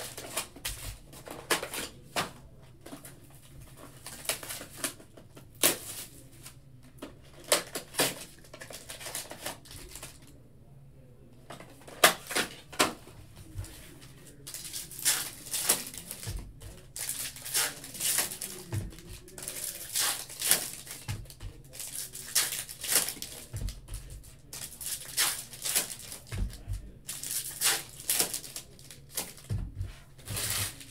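Foil trading-card pack wrappers crinkling and tearing open, mixed with rustles, taps and a few low knocks of cards and packs handled on a table. The crinkling is sparse at first, pauses briefly near the middle, then comes thick and irregular for the second half.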